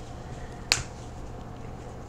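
One sharp plastic click, about two-thirds of a second in, from a spice shaker's cap, over a faint steady room hum.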